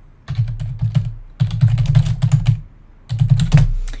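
Typing on a computer keyboard: three quick runs of keystrokes with short pauses between them, the middle run the longest.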